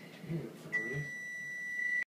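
A steady, high-pitched electronic beep starts about two-thirds of a second in and holds as one unbroken tone to the end, with brief low voice murmurs just before and as it begins.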